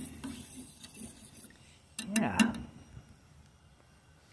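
Metal spoon stirring hot chocolate in a small stainless steel saucepan, faint at first, then a few sharp metal clinks about two seconds in before the stirring stops.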